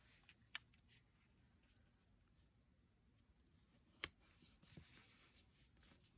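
Quiet handling of paper stickers: peeling them off their backing and pressing them onto a planner page, with faint rustles and two small sharp taps, one about half a second in and one about four seconds in.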